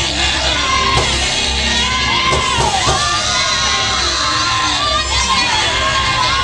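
Live gospel music played by a band, with voices singing and the congregation shouting and cheering over it.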